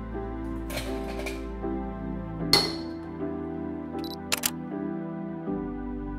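Ice cubes dropped into a cup of coffee, a splash and a sharp clink, followed by two quick camera shutter clicks, over background music.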